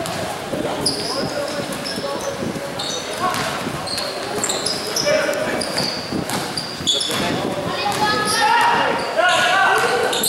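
Basketball game in a gym: the ball bouncing on the court, short high squeaks of sneakers on the floor, and players and spectators shouting, the voices getting louder near the end.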